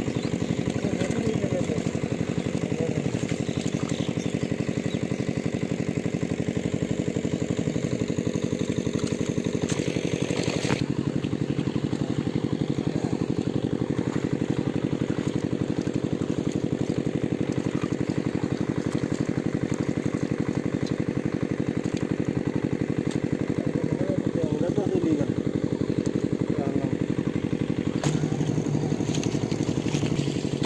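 A small engine running steadily at constant speed, with a fast even pulse.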